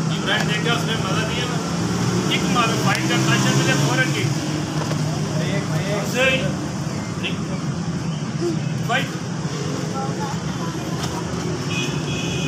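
Steady low hum of nearby street traffic under scattered background voices, with short high chirps coming and going.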